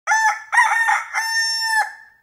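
A rooster crowing once: two short clipped notes followed by a long held note that breaks off near the end.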